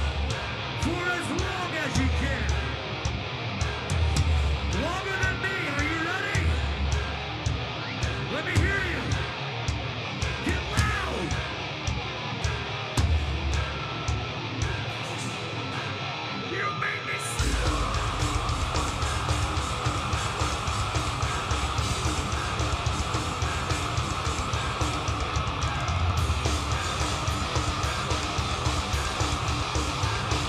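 A metalcore band playing live: distorted electric guitars and drums under vocals. About 17 seconds in, the full band comes in heavier, with rapid kick-drum strokes under a dense wall of guitar.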